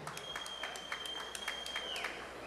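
Thin, scattered applause from an audience, individual claps standing out irregularly. A single steady high tone is held through most of it and drops away at the end.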